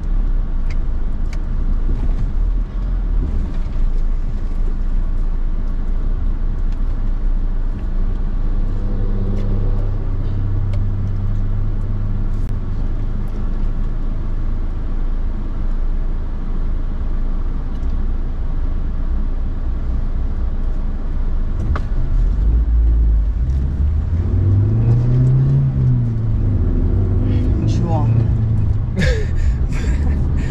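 Car engine and road rumble heard from inside the cabin while driving. The engine hum holds steady for a stretch, then rises and falls once near the end as the driver speeds up and eases off.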